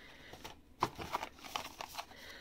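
Small cardboard boxes being handled and lifted out of a cardboard shipping box. Light clicks, scrapes and rustles of card on card, clustered in the second half.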